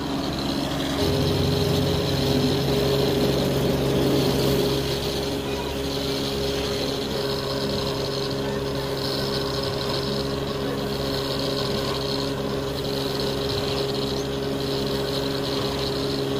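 Rice hulling machine running steadily as it mills paddy into rice, a constant mechanical hum with a higher tone joining in about a second in.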